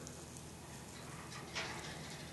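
Faint handling noise of fingers rubbing brittle, heat-degraded synthetic string as it crumbles into fibres, with one brief soft rustle about one and a half seconds in.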